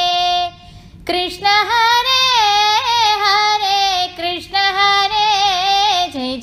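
A woman singing a Kannada devotional song solo. She holds one long note that ends about half a second in, then after a brief breath sings winding, ornamented phrases with sliding pitch and vibrato on drawn-out vowels.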